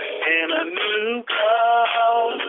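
A man singing a homemade jingle-style song, recorded off a telephone voicemail line, so the voice sounds thin, with no deep bass and no highs.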